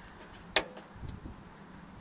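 A single sharp click as the power switch on a 24 V inverter-charger is pressed to turn it on, followed about half a second later by a fainter tick.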